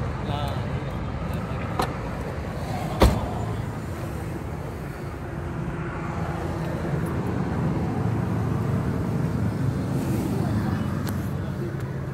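Car door latch clicking open: one sharp click about three seconds in, with a smaller click just before it. Under it there is a steady low hum and people talking in the background.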